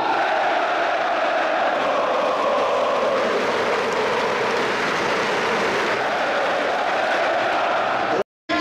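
A large crowd of football supporters chanting and singing together in a stadium stand: a dense, steady wall of massed voices.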